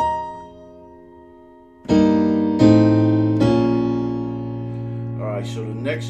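Piano chords played slowly. The first, struck at the start, is an F chord with C, E-flat and B-flat on top, and it fades away. About two seconds in come three more strikes within a second and a half, and these are left ringing.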